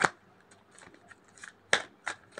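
Tarot cards being shuffled by hand: a sharp snap at the start, soft ticks, then a louder snap near the end.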